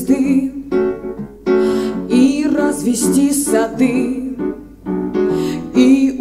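A woman singing a song live to grand piano accompaniment.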